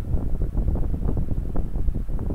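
Low, uneven rumbling noise on the microphone with no clear pitch, of the kind wind makes when it buffets a microphone.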